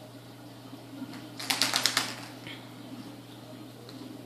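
A plastic Easter egg handled by a small child: a quick burst of rattling plastic clicks, lasting about half a second, about one and a half seconds in.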